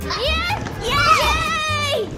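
Young children shouting and squealing excitedly in high voices, a short rising cry and then a longer, swooping one, over background music with a steady low beat.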